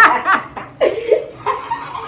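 A woman laughing loudly in several bursts.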